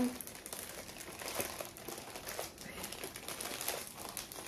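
Black plastic mailer bag crinkling and rustling irregularly as hands work it open.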